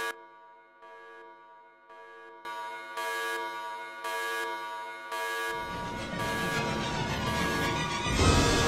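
A horn-like alarm tone sounding in repeated pulses over a steady held musical drone. About five and a half seconds in, a low rumbling noise comes in and grows louder.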